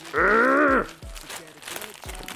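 A man's wordless drawn-out vocal exclamation, rising then falling in pitch, lasting under a second, followed by faint crinkling of a plastic mailer bag being handled.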